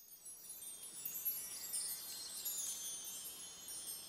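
Shimmering high-pitched chimes tinkling in a dense cluster, like a wind chime, rising out of silence at the start and easing slightly near the end.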